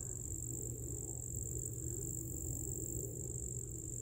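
Steady, unbroken high-pitched drone of singing insects, with a low steady rumble underneath.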